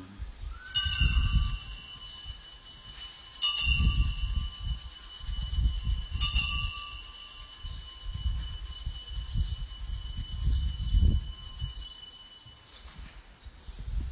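Altar bell struck three times, about two and a half seconds apart, each strike ringing on in long, clear high tones that fade out near the end. This is the bell rung at the elevation of the chalice, right after the words of consecration.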